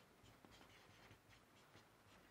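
Marker pen writing on a whiteboard: a run of short, faint scratching strokes as the words are written out.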